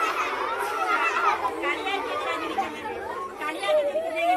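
A crowd of young schoolchildren chattering all at once, many high voices overlapping.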